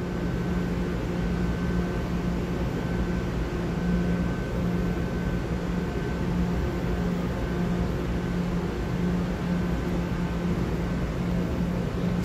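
Steady hum of a stationary Taiwan Railway EMU900 electric multiple unit at the platform, its onboard equipment and air conditioning running, with a faint constant high whine over a low pulsing drone.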